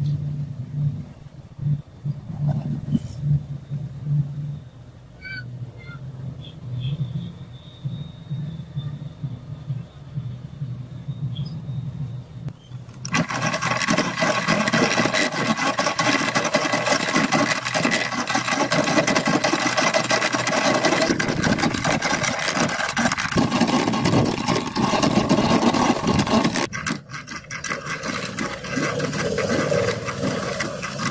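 Restored hand-cranked coil winding machine being cranked fast, its geared spindle spinning. The loud running noise starts abruptly about halfway through and thins out near the end; before it there is only a low hum and a few light clicks.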